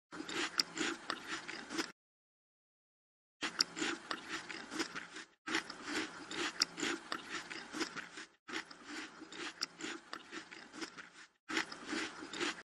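Close-miked chewing and crunching of braised pig stomach and fresh vegetables, with a steady chewing beat of about three a second and sharp crackly clicks. The chewing is broken by abrupt dead silences, the longest about two seconds in.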